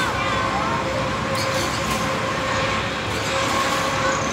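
Amusement-park flat ride with spinning, tilting arms running: a steady mechanical hum under a continuous rush of noise, with people's voices mixed in.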